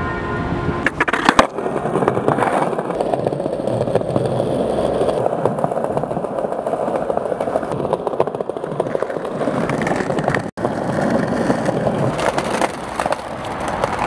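Skateboard wheels rolling over paving: a steady rumble, with a few sharp clacks of the board about a second in.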